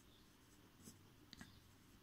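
Near silence with a couple of faint scratches of a pencil writing on paper, about a second in and again shortly after.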